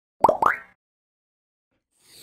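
Animated logo intro sound effect: two quick pops, each rising in pitch, within the first second, followed by silence.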